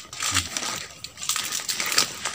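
Dry leaves and twigs crackling and rustling in two spells of quick, irregular crackles, as of someone moving through dry undergrowth.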